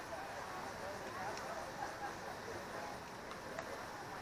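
Distant, indistinct voices of people on a baseball field, with a few faint clicks.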